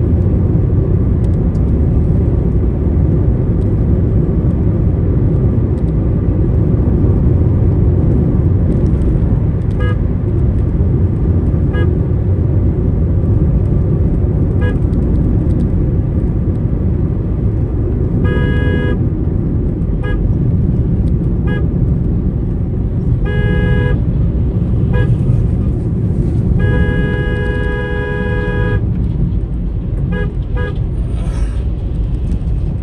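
Steady low rumble of road and engine noise heard from inside a moving car, with vehicle horns sounding over it: brief toots from about ten seconds in, longer blasts twice in the middle, and a long blast of about two seconds near the end.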